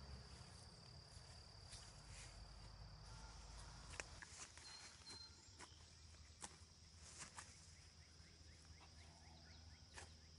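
Near silence with a faint, steady, high-pitched insect buzz, like a cricket or katydid, throughout. A few faint, brief clicks and rustles come from knife work on the hanging deer carcass.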